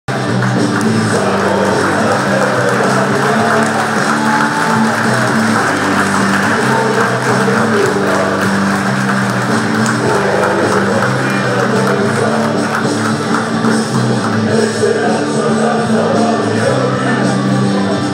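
Music played loud and steady with held low notes, with crowd noise beneath it.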